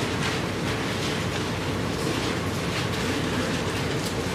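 Bible pages being turned by a seated congregation: a continuous papery rustle of many thin pages, with small irregular flicks throughout.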